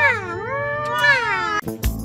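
A long, high, wavering wail that slides down and rises again, with a cat-like yowling quality. Music with a heavy drum beat starts near the end.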